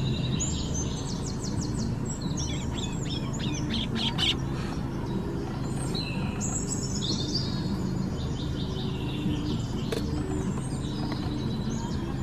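Birds chirping and twittering, with many short high calls and quick trills, over a low steady hum.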